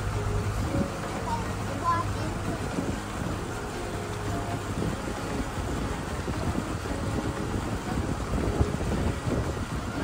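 Resort launch boat's engine running with a steady low hum while under way, with wind buffeting the microphone.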